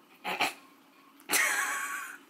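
A woman's short, breathy laughs: a brief one just after the start, then a louder, longer one about a second in.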